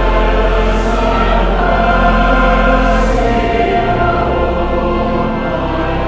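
Choir and congregation singing a hymn with organ accompaniment, the voices held in long sustained notes over a steady low organ bass.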